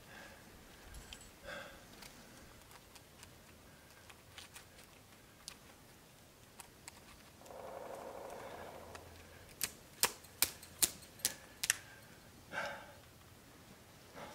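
Metal climbing gear on a trad climber's harness rack clinking: a run of about six sharp clicks in quick succession around ten seconds in, among fainter scattered ticks and rustling as he moves on the rock.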